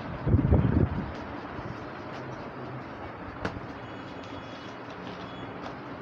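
A brief low rumble of a handheld camera being moved comes about half a second in. Then comes steady background noise of a room, with a single faint click midway.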